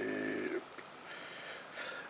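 A person's drawn-out, hummed hesitation sound, ending about half a second in, then faint room tone.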